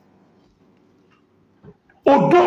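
Near silence: a pause in speech, with one brief faint sound near the end.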